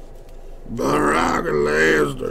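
A man's drawn-out wordless vocal sound in two parts, starting about three-quarters of a second in.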